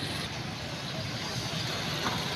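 Steady street traffic noise: motorcycle and other vehicle engines running, with road noise and a low hum throughout.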